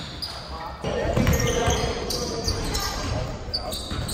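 Live sound of a pickup basketball game on an indoor hardwood court: a ball bouncing, short high squeaks from sneakers, and players' voices, echoing in the large gym. The sound changes abruptly about a second in, where the footage cuts to another angle.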